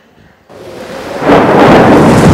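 Thunder and heavy rain from a commercial's soundtrack, starting about half a second in and swelling to full loudness by just over a second.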